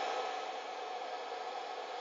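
Dog dryer blowing air through its flexible corrugated hose: a steady, even hiss.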